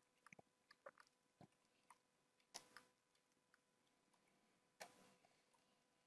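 Near silence: room tone with a dozen or so faint, short clicks at irregular intervals, the two loudest about two and a half and five seconds in.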